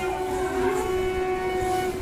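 Train horn, one long steady note that stops near the end, over train running noise.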